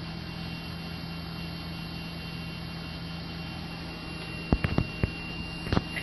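Steady electrical hum and hiss from the Garmin Perspective avionics powered up on battery, with a thin high whine over it. About four and a half seconds in comes a quick run of four sharp clicks, then one more near the end.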